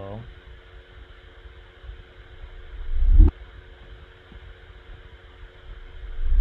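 Reversed hit on a five-gallon plastic water jug, pitched down with added sub bass. About three seconds in it swells up from nothing and cuts off suddenly, and a second identical swell begins right at the end.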